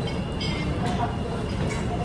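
Restaurant room noise: a steady low rumble under faint background voices, with a couple of light clicks.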